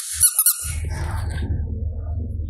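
Squeaky yellow rubber squishy toy squeezed by hand, giving a quick run of high squeaks within the first half second, then a steady low hum.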